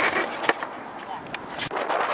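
Skateboard knocking and clacking on the top of a metal storage box in a scatter of sharp hits, the loudest at the start and about half a second in.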